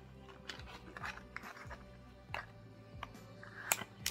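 Quiet background music, with scattered light clicks and scrapes of fingers and nails working at the flaps of a cardboard perfume box. A sharper click comes near the end.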